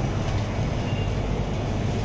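Steady hum and hiss of refrigerated freezer display cabinets running, unbroken and without any change.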